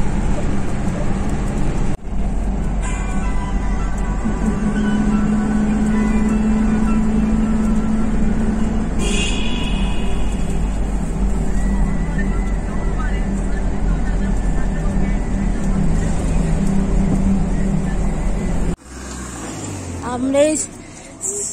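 Steady low road and engine rumble heard inside a car's cabin as it drives through a road tunnel. It drops away abruptly near the end.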